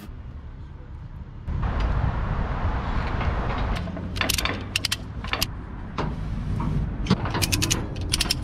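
Ratchet tie-down strap being worked to secure a load: short runs of sharp clicks from the ratchet buckle, a few around the middle and a quicker run near the end, over a steady low rumble.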